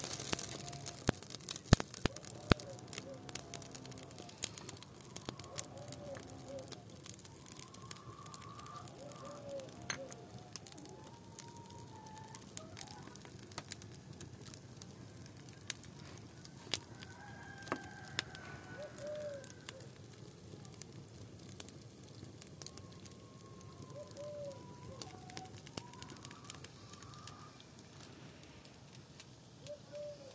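Wood fire crackling with frequent sharp pops, loudest in the first few seconds, while chickens cluck and call on and off throughout.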